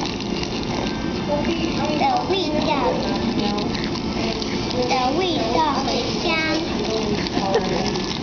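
Speech: a girl speaking in Chinese, a few short phrases, over a steady rushing background noise.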